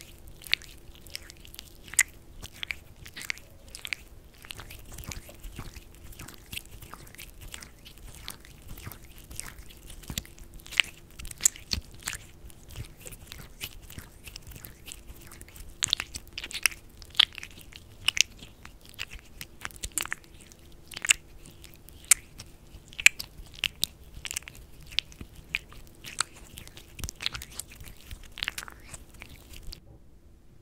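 Hands massaging lotion into a hand and wrist close to the microphone: irregular wet, sticky clicks and crackles, several a second, some louder than others.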